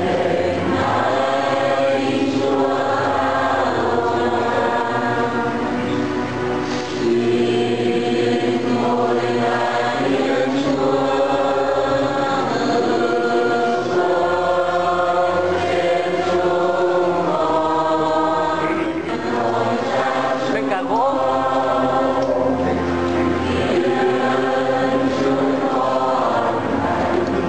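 A choir singing a slow hymn in long held notes, over low sustained bass notes that change every few seconds.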